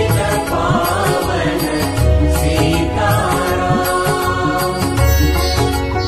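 Instrumental interlude of a Hindi devotional bhajan's karaoke backing track, with no singing, with a deep bass note returning every few seconds under the melody.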